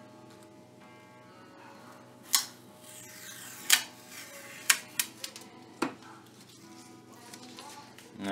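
Masking tape being handled on a glass plate, giving about half a dozen sharp crackles as strips are peeled and pressed down, over faint background music.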